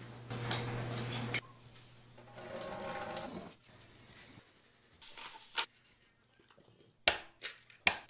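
Kitchen prep handling sounds with a glass mixing bowl: short stretches of scraping and rustling, a brief rustle midway as almond flour is poured from its bag, and a few sharp taps near the end as an egg is cracked into the bowl.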